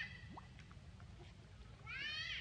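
A macaque giving high-pitched, mewing calls that rise in pitch: one ends right at the start, and a louder one begins near the end.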